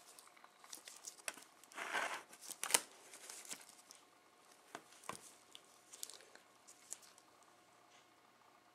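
Black nail polish being scraped across a metal nail-stamping plate with a scraper, then a stamper head pressed onto the plate to pick up the image: faint scraping, loudest about two seconds in, and a few small sharp clicks and taps.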